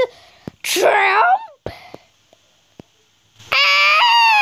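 A person's voice: a short, wavering, sharp cry about a second in, then a long held scream that starts near the end and sinks slightly in pitch.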